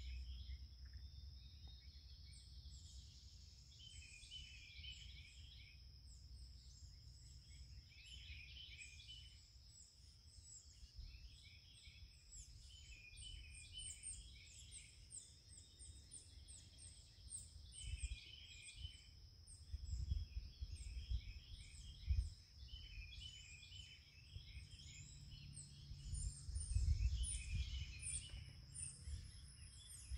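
Several birds chirping and singing faintly, with short calls repeating throughout over a steady high whine. Low rumbling bumps come and go in the second half.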